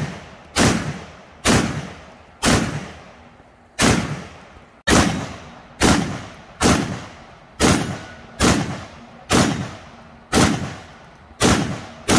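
A Max Arms HDM 1050 semi-automatic 12-gauge shotgun firing a steady string of about a dozen shots, roughly one a second, each trailing off in an echo.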